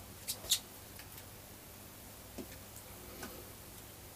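A few light clicks and soft rustles of clothing being handled and laid down, the sharpest two about half a second in, over a faint steady background.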